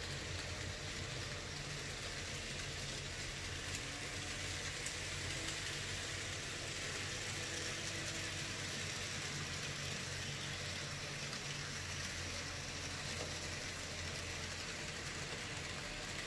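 Model trains running on a small tabletop layout: a steady hum of the locomotive motors with the rolling rattle of wheels on sectional track.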